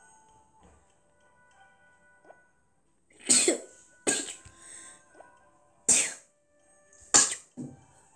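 A child coughing about five times in short loud bursts, starting about three seconds in, over faint soft background music.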